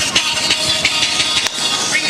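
Music with a steady, quick beat playing for a dance routine.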